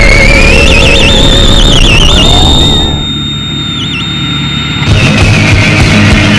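A theremin sliding upward in pitch with a wide vibrato over a dense musical backing, then holding one high note on its own with a brief wobble as the backing drops away. Loud, full band music comes back in near the end.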